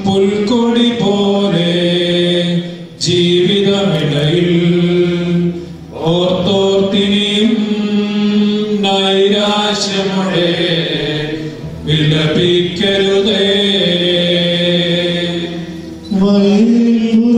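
Liturgical chant sung during a funeral service, in long held phrases with short breaks between them.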